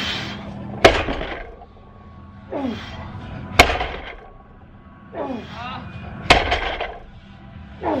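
Deadlift reps with a 200 kg barbell: the Eleiko rubber bumper plates land on the gym floor three times, about every two and a half seconds, each landing a sharp thud. Before each landing the lifter lets out a loud grunt that falls in pitch.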